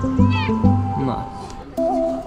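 A cat gives one short, high meow about a third of a second in, over background music with steady low notes and held tones.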